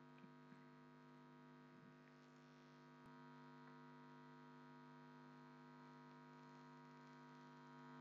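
Near silence: a steady electrical mains hum on the recording, with a few faint clicks.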